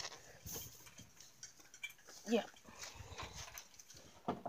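A single short call from a pet, pitched with harmonics, about halfway through. Faint clicks and rustling around it.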